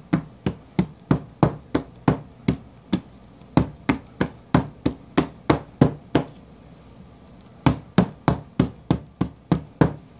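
A loaf mould full of freshly poured soap batter rapped again and again on a countertop, about three sharp knocks a second, with a short break past the middle. The tapping is done to bring trapped air bubbles up out of the batter.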